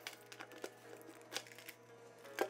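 A light bulb being screwed into a lamp socket by hand: a few faint clicks and light scrapes of the bulb's base turning in the socket.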